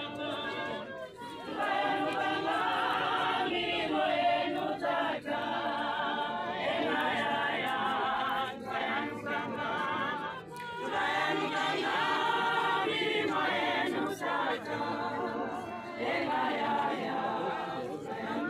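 A crowd of mourners singing together unaccompanied, many voices in phrases a few seconds long with brief breaks between them.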